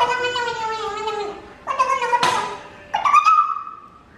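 Three drawn-out, high-pitched vocal calls, the last one rising and then held steady, with a sharp click about halfway through.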